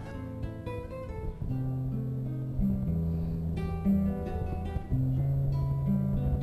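Classical guitar played solo, fingerpicked: scattered single plucked notes at first, then sustained bass notes and chords from about a second and a half in.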